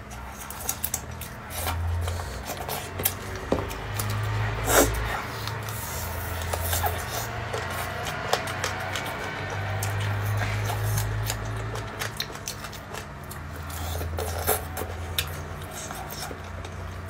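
Eating crispy fried chicken: scattered short crackles and mouth sounds from biting and chewing, over background music with a low bass line that steps between notes.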